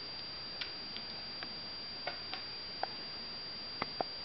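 Small, irregular mouth clicks and smacks from a baby Eurasian red squirrel lapping gruel from a syringe tip, about eight in four seconds, the sharpest two near the end. A steady high-pitched whine runs underneath.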